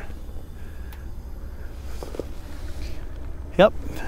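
Portable butane camp stove burning steadily under a skillet of heating oil, with a steady low rumble and a faint hiss.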